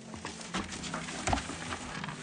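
A few light knocks and rustles: plastic food containers being set down in a cardboard box.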